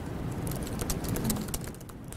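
Rapid typing on a laptop keyboard: a quick run of light key clicks over a low room hum.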